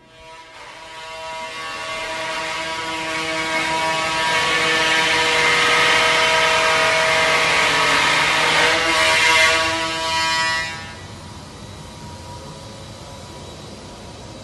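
A loud, steady mechanical drone carrying a whine of several steady tones. It builds over the first few seconds, drops sharply about eleven seconds in, and then carries on more quietly.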